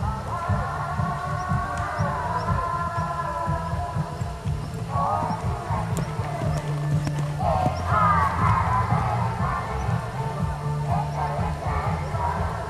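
Music playing, a melody in the middle range over an uneven low rumble.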